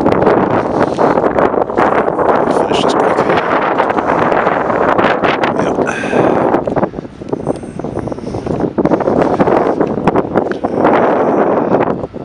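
Wind buffeting the camera microphone: a loud, rough rushing that rises and falls in gusts, easing briefly about six seconds in and again for a moment a few seconds later.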